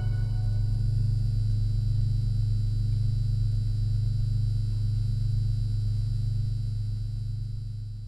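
The held final low note of a pop song's outro, a steady deep bass or synth tone with faint high overtones, slowly fading toward the end.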